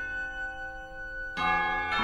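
Contemporary chamber music: a sustained ringing chord of many steady tones, with a second, louder chord struck about one and a half seconds in.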